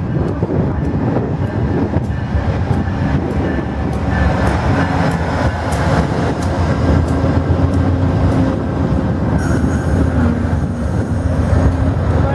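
A VIA Rail P42DC diesel locomotive and its stainless-steel Budd passenger cars rolling past at close range as the train pulls into the station, with a loud steady rumble of wheels on rail and repeated sharp clicks.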